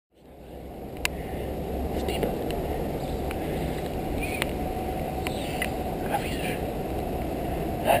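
Steady low outdoor rumble that fades in over the first second, with a few light clicks and brief faint chirps; a child's voice calls out at the very end.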